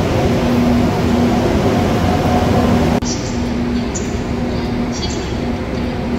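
A KTX-Sancheon high-speed trainset standing at the platform, its onboard equipment giving a steady hum with a low tone that comes and goes. About halfway through, the sound drops a little quieter and duller.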